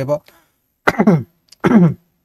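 A man's voice making three short vocal sounds, each falling in pitch, with brief pauses between them.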